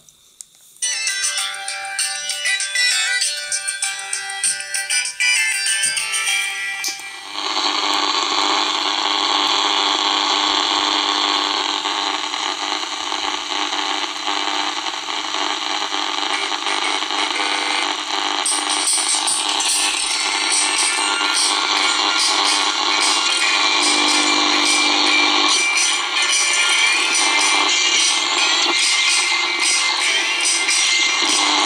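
Tinny music playing on a mobile phone, picked up by a homemade walnut-shell transmitter with an electret microphone and heard through an old long- and medium-wave radio receiver as its tuning is moved across the band. About seven seconds in, the sound thickens into a dense, steady noise with the music still in it.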